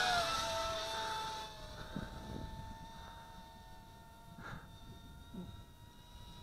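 Eachine Racer 180 tilt-rotor drone's brushless motors whining in flight, the pitch dipping slightly at first and then holding steady while the sound gradually fades.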